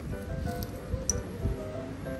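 Background music with soft held notes.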